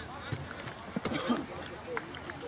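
Indistinct voices calling out across a football pitch, the loudest about a second in, with a couple of short sharp knocks.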